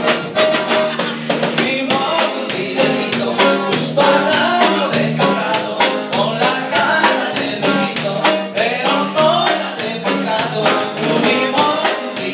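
A band playing norteño-style music with accordion, guitars, bass and a drum kit keeping a steady beat, with men singing over it.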